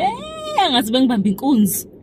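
A woman's wordless vocalising: a high, drawn-out rising 'ooh'-like cry in the first half second, then shorter voiced sounds that stop just before the end. A steady low car-cabin rumble runs underneath.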